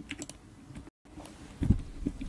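Computer keyboard typing: scattered light key clicks, with a brief cut-out in the sound about halfway and a louder low thud near the end.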